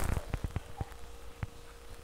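A few irregular clicks and soft knocks, mostly in the first second with one more later, over a faint steady hum.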